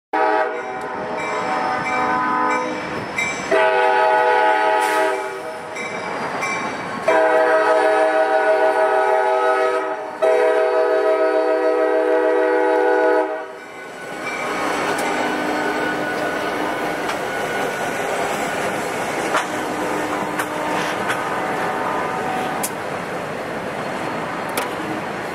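A CSX freight locomotive sounds its multi-chime air horn in four long blasts. After about 13 seconds the horn stops and the train runs by with a steady rumble of engine and wheel noise.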